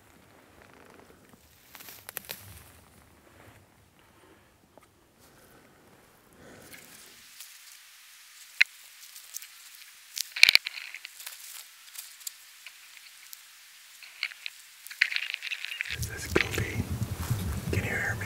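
Faint rustling and clicks of clothing and gear handled close to the microphone, with low whispering. There is a sharp click about ten seconds in, and a louder low handling or wind noise near the end.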